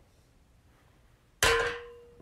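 A single sharp clang about one and a half seconds in, from a hard object being struck, with a clear ringing tone that fades within about half a second.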